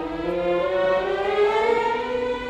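Small symphony orchestra playing classical-era music, the strings bowing a passage that climbs steadily in pitch.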